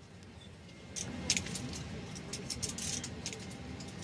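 Handcuffs clinking as they are unlocked and taken off, a quick run of metallic clicks and jingles starting about a second in, over a low background murmur.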